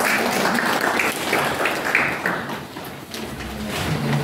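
Audience applauding, dense clapping that thins out and fades about two and a half seconds in.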